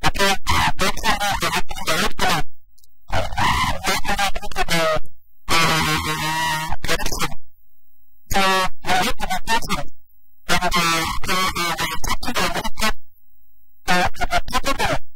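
Speech only: a person talking in short phrases, each cut off by abrupt, completely silent gaps; the words are not made out.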